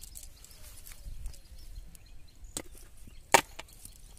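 Wet cast net and its catch being handled on mud: faint crackling and rustling, with two sharp snaps about three-quarters of a second apart, the second much louder.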